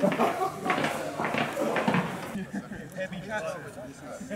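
Indistinct talking from several men, with no clear words; the background sound changes about two seconds in.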